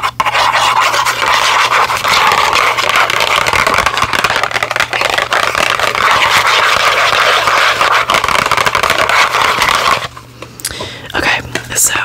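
Long press-on fingernails scratching and tapping rapidly over a cardboard product box, a dense continuous scratchy sound that drops away about ten seconds in.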